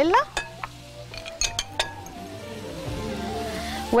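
A few light clinks of a metal utensil against a glass baking dish, most of them in a quick cluster about a second and a half in, as grated cheese is worked onto mashed potatoes. Steady background music runs underneath.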